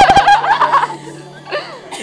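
A person close to the microphone lets out a loud, high-pitched laugh in the first second, over background music. Quieter laughter follows from the audience.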